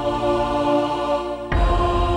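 Background music of steady held drone tones, with a louder swell coming in suddenly, low and full, about one and a half seconds in.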